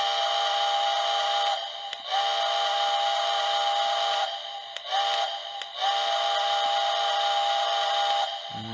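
The sound system of a Lionel HO scale Nickel Plate Road 765 Berkshire model locomotive playing a recorded steam whistle: four blasts of a steady chord, long, long, short, long, the grade-crossing whistle signal.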